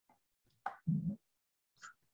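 A short mouth click followed by a brief low hum or murmur from a person on a video-call audio feed, otherwise dead silence.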